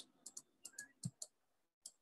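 Faint, sparse clicks of a stylus tapping and writing on a pen tablet: about half a dozen in two seconds, with one soft low knock about a second in, otherwise near silence.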